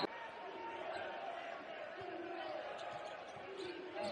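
Basketball arena background during play: a low crowd murmur with a few faint ball bounces on the hardwood court.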